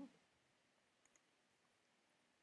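Near silence in a pause between sentences, with two faint short clicks about a second in.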